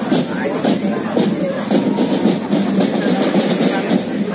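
Marching band playing, with drums beating through the band's music, picked up from the edge of the field along with nearby voices.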